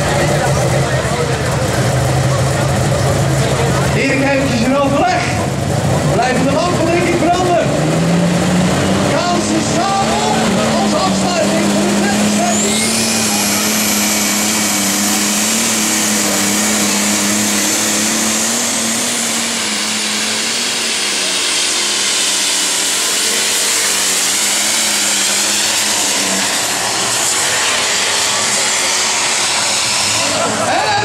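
Super stock pulling tractor's turbocharged diesel engine revving up and running at full throttle through a pull, with a high turbo whine that rises in about twelve seconds in and holds until it fades near the end.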